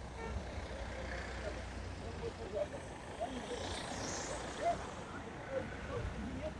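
Open-air background of a steady low traffic rumble with faint, scattered voices of people talking at a distance.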